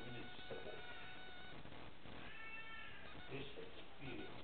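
Short, broken fragments of a man's speaking voice with pauses. About two seconds in comes a brief, high-pitched cry that rises and falls, like a meow.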